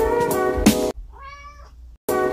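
Jazzy background music that cuts off abruptly about a second in, followed by a faint single cat meow that rises and then falls in pitch.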